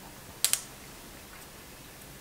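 Two quick small clicks close together, about half a second in, from the handheld refractometer being handled; otherwise quiet room tone.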